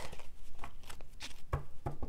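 Tarot cards being handled in the hands: a quick string of light clicks and taps from the card stock, with two duller knocks near the end.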